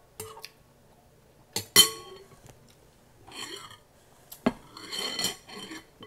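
Metal spoon clinking and scraping against a glass bowl of chopped greens. There are three sharp clinks, the loudest about two seconds in with a short glassy ring, and between them stretches of scraping as the greens are stirred.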